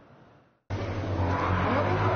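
Outdoor ambience from amateur footage, starting abruptly about two-thirds of a second in after a brief silence: a steady low rumble under a noisy hiss, with faint voices in the background.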